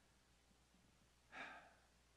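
Near silence, broken once about a second and a half in by a short, soft breath from a man.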